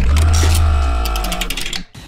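News-bulletin transition sound effect: a sudden hit with a deep bass boom and a many-toned ringing under a rapid ticking, fading away over about two seconds.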